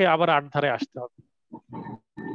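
A man speaking Bengali with a drawn-out, falling syllable that trails off into a pause about a second in, followed by a few faint short sounds of voice.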